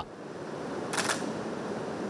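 Camera shutters clicking in a quick burst about a second in, over a steady hiss of room noise.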